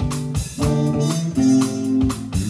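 A live jazz-funk band playing: electric guitar and bass over a drum kit, with sustained chords and notes and steady drum and cymbal hits.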